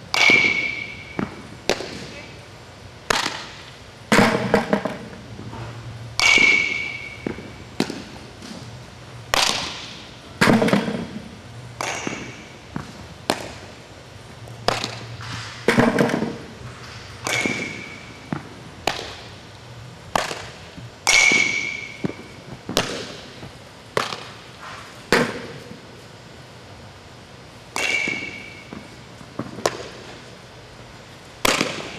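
Repeated sharp impacts echoing around a large indoor hall: a softball bat hitting balls, each hit leaving a short ringing ping, about five times. Between the hits, softballs smack into leather gloves.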